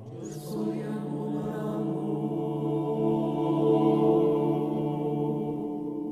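Mixed choir of men's and women's voices singing a cappella, holding one long sustained chord that swells to its loudest about two-thirds of the way through.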